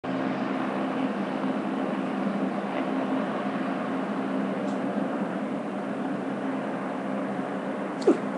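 A steady mechanical hum with a low drone that does not change.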